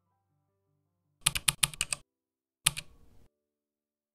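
Mechanical keyboard keystrokes: a quick run of about eight clicks in under a second, then a single keystroke about half a second later, over faint soft musical tones.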